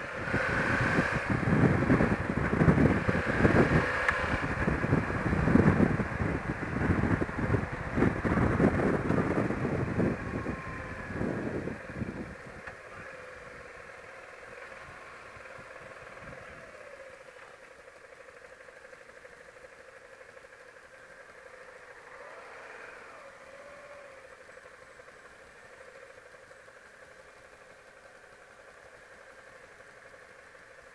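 Wind buffeting a motorcycle-mounted microphone at road speed for the first dozen seconds, over the engine. Then the motorcycle runs slowly with a quieter, steady engine note, with a brief rise and fall in pitch about two-thirds through.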